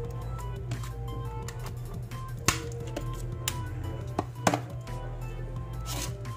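Background music, with a few sharp plastic clicks as the snap-fit clips of a wifi modem's plastic case are pried apart. The loudest clicks come about two and a half and four and a half seconds in.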